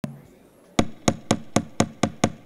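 A quick run of sharp knocks on a hard surface, about four a second, starting just under a second in.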